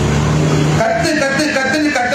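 A man speaking loudly into a public-address microphone. Under the first second there is a steady low hum that stops abruptly before his voice resumes.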